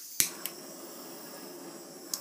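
Handheld butane torch: a sharp click about a fifth of a second in, a smaller click just after, then the flame's steady hiss as it is played over wet acrylic pour paint to bring up cells.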